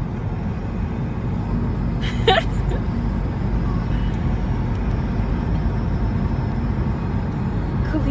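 Steady road and engine rumble inside the cabin of a moving car, with one brief voice-like sound about two seconds in.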